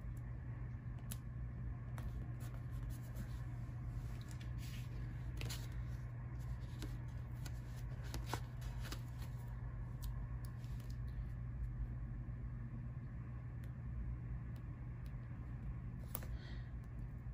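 Paper sticker sheets being handled and stickers pressed onto planner pages: scattered soft ticks and rustles over a steady low hum.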